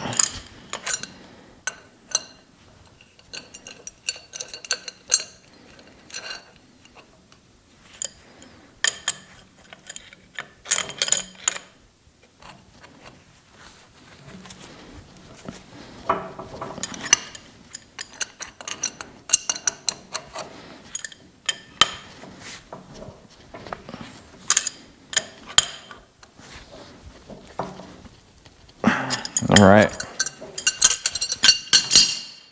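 Steel wrench clinking and scraping against threaded steel hydraulic hose fittings as they are tightened, in short irregular clusters of sharp metallic clinks with pauses between.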